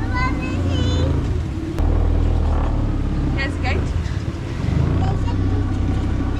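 Small outboard motor on an aluminium dinghy running steadily at low throttle while trolling against a strong outgoing current; its note gets louder about two seconds in.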